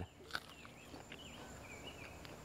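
Faint, high chirping calls over quiet ambient noise, with one soft click about a third of a second in.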